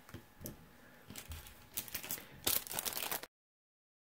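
Card and packaging being handled, with light rustling and crinkling in short irregular bursts and a faint click about half a second in; the sound cuts off abruptly near the end.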